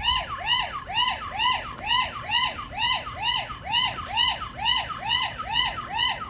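The eufy Smart Floodlight camera's built-in 100 dB alarm siren sounding, a loud siren whose pitch sweeps up and back down about twice a second.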